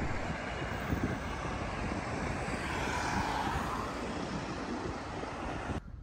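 A vehicle passing: a steady rushing noise that swells about halfway through, fades again, and cuts off suddenly just before the end.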